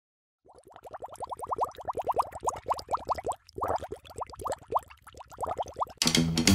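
A fast run of short, rising bloop-like pops, the sound effects of a cartoon-style animated intro. They come at about eight a second, starting about half a second in, with a couple of brief breaks.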